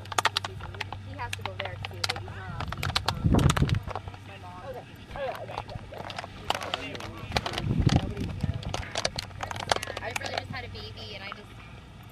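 Indistinct voices of people talking in the background, with scattered sharp clicks and knocks over a steady low hum. There are two louder low rumbles, about three and a half and about eight seconds in.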